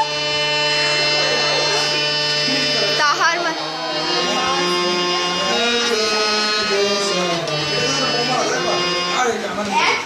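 Harmonium played in sustained chords, with a low note held under changing upper notes until it drops out near the end, the reeds sounding steadily with no gaps.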